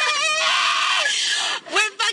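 A vocalist's raspy, drawn-out scream, held for about a second with no beat under it, then breaking off, with a voice starting again just before the end.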